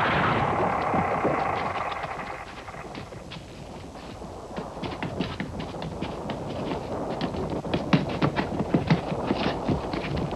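A structure collapsing: a crash that fades over about two seconds, then scattered sharp taps and knocks of falling debris that grow busier toward the end.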